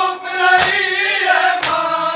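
A crowd of men chanting a noha together in a lamenting melody, with two sharp slaps about a second apart keeping the beat, the sound of matam (chest-beating) to the noha.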